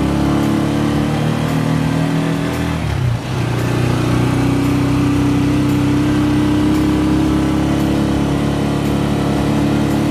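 Engine of a small passenger vehicle running as it drives, heard from inside the passenger cabin, with road noise. The engine sound drops away briefly about three seconds in, then comes back up and holds steady.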